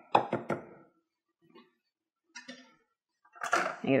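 A wire whisk tapped quickly against the rim of a mixing bowl, about four light knocks in the first half-second, shaking off pancake batter.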